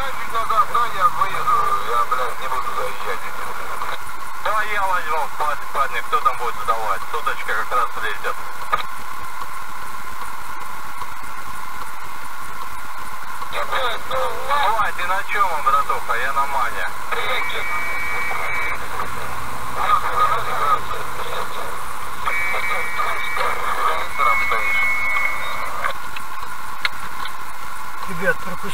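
Thin, radio-filtered voices talking in bursts over a CB radio in the car, with pauses between the exchanges.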